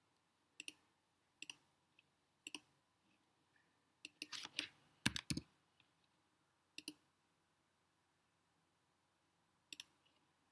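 Computer mouse clicking: single sharp clicks every second or so, with a quick run of clicks about four to five and a half seconds in.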